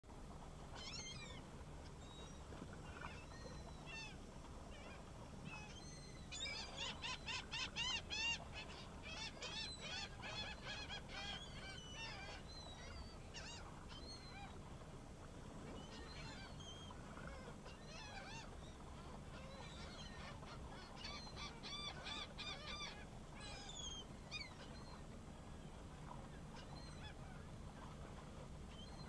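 Birds calling in rapid runs of short, repeated calls, the loudest run about a quarter of the way in and more runs later, over a faint low steady hum.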